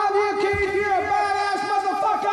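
A man screaming one long note, held at a steady high pitch with a slight waver.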